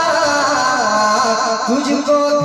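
A man singing a naat, an Urdu devotional poem, through a public-address system in long, wavering held notes.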